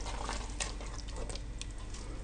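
Wooden spoon stirring a thick, simmering zucchini-and-vegetable mass in an enamel pot: a soft, steady wet stirring noise with faint small clicks.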